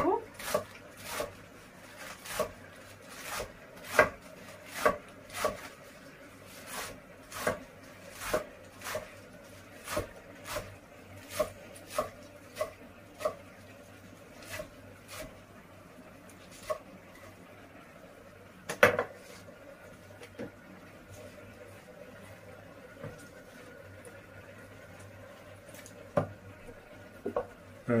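Kitchen knife chopping lettuce leaves on a wooden cutting board: crisp knocks about twice a second, with one louder knock past the middle and the strokes then mostly stopping.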